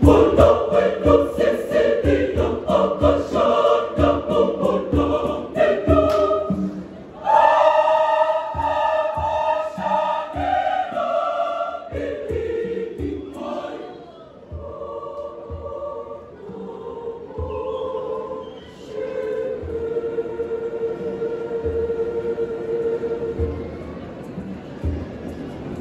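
Large mixed choir singing in harmony over steady hand-drum beats. About seven seconds in the voices swell into long held chords, then grow softer from about twelve seconds and end on one long held note.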